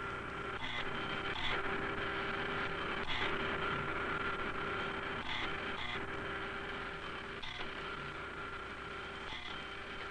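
A dot-plotting machine runs with a steady two-tone electric hum, broken now and then by soft clicks about a second or two apart, over a low hum from the film soundtrack.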